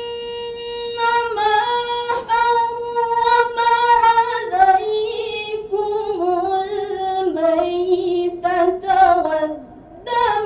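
A teenage girl's voice reciting the Qur'an in the melodic tilawah style: a long held note at the start, then ornamented runs that step gradually downward in pitch, with a brief pause for breath near the end.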